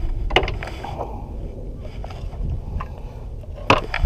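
Scattered clicks and knocks of fishing gear being handled in a small fiberglass boat, the loudest just before the end, over a steady low rumble.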